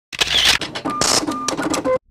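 Logo-intro sound effect: a fast, irregular run of clicks and short blips, with a brief hiss about a second in, cutting off suddenly.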